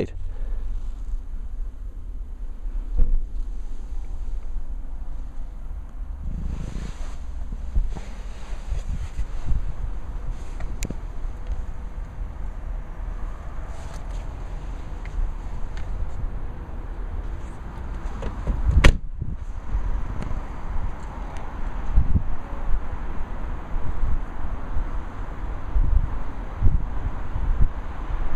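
Wind rumbling on the microphone with small handling knocks, and a car door shut once about two-thirds of the way through.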